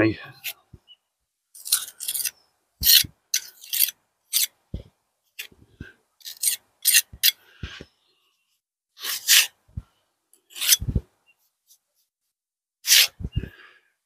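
Small steel pointing trowel working cement mortar into brick joints: a string of short, irregular scrapes of steel on mortar and brick, with pauses between strokes and a few dull taps.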